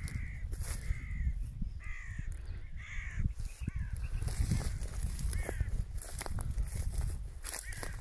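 Crows cawing: short harsh calls repeating every second or so, over a low rumble of wind on the microphone.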